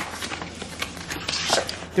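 A stiff linen-look lampshade sheet being unrolled and smoothed flat by hand on a countertop: irregular rustling and sliding, with a louder rustle about one and a half seconds in.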